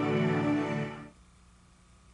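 Soft background music of sustained, slowly shifting tones that fades out about a second in, leaving near silence.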